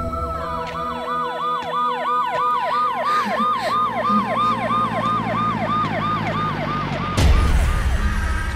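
Police siren in a fast yelp: a falling pitch sweep repeated about three to four times a second, over a steady low drone. A loud hit cuts in about seven seconds in.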